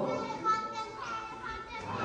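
Young boys' voices chanting together in unison, in the sustained recitation style of novice candidates chanting their ordination request.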